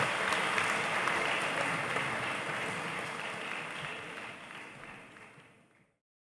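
Audience applauding, the applause fading out gradually over the last few seconds.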